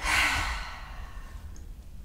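A woman's sigh: one breathy exhale through the mouth, loudest right at the start and fading within about a second.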